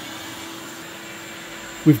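Ridgid 4.25-peak-horsepower 12-gallon wet/dry shop vac running steadily, its hose sealed to a C6 Corvette's stock air filter box and drawing air hard through it; a steady rush of air with a faint hum.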